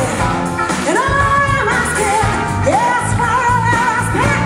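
Live rhythm-and-blues band playing, with voices holding long, wavering sung notes over bass and drums.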